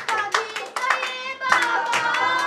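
Hands clapping in a quick steady rhythm, about four to five claps a second, in time with a singing voice.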